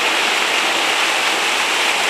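Water from an artificial rock waterfall pouring into a pool, a steady, even splashing.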